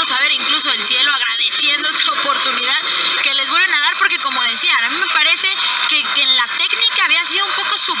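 Spanish-language radio football commentary: a voice talking continuously and quickly, with a thin, radio-band sound lacking low bass.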